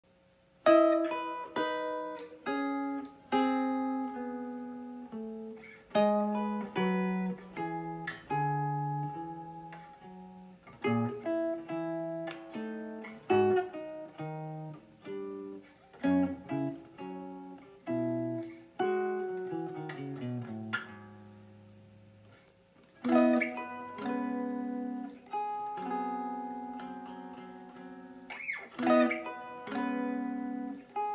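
Solo jazz chord-melody played on a McCurdy Kenmare archtop guitar through a small ZT Lunchbox amp: slow plucked chords and single-note melody. About 19 seconds in a descending run ends on a chord left to ring and fade for a couple of seconds before the playing picks up again.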